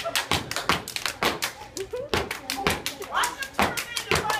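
A crowd clapping and stomping a quick, steady beat for dancers, with voices calling out over it.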